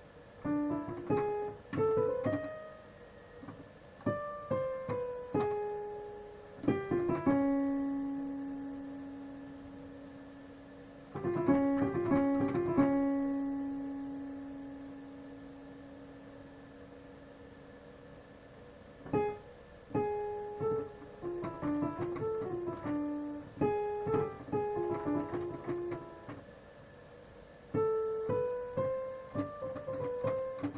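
Digital piano played in short phrases of single notes, with pauses between them. A held note rings on and fades slowly after about seven seconds in, and again after about thirteen seconds in.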